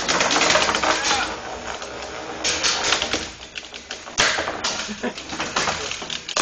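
Antweight combat robots clattering in the arena: dense, rapid rattling and clicking that comes in surges, with a fresh burst about two and a half seconds in and another just after four seconds.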